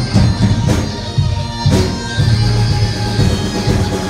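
Live rock band playing an instrumental passage: electric guitar, bass and drum kit, with several cymbal crashes in the first two seconds.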